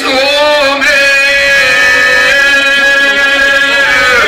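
Male singers in the izvorna folk style, singing into microphones. They draw out one long note, wavering at first and then held steady, which breaks off near the end.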